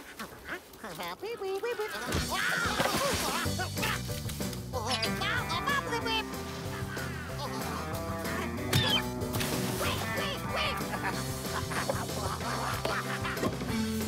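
Squawking, quack-like cartoon character vocalizations from the Rabbids. About two to three seconds in, upbeat background music with a steady bass line starts, and more squawks and shouts come over it.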